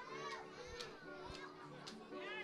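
Faint high-pitched children's voices and chatter, with soft music and a few light clicks underneath.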